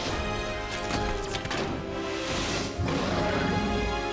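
Animated robot transformation sequence: driving music layered with several sharp metallic clanks in the first half and a rushing whoosh past the middle.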